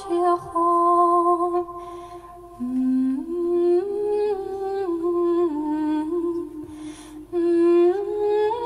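A woman's solo voice singing a slow Irish-language Christmas carol, unaccompanied: long held notes that step up and down, with short breaks for breath about two seconds in and near the end.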